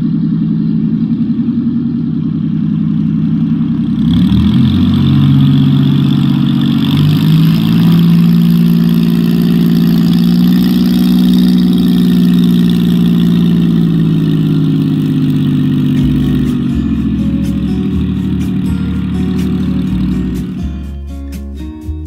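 Piston engine of a Spitfire-style propeller aircraft running as it taxis, revving up about four seconds in and then holding a steady drone. Near the end it gives way to music.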